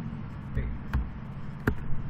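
Computer keyboard keystrokes: two sharp clicks about three-quarters of a second apart over a steady low hum.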